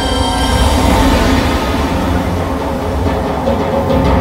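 Loud show soundtrack music over an outdoor amphitheatre sound system, with a heavy steady low rumble under sustained tones.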